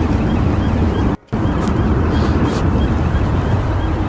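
Steady road and wind noise inside a moving van at speed, heard through a phone's microphone, with a brief cut-out about a second in.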